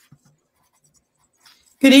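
Near silence with a few faint clicks, then a woman starts speaking just before the end.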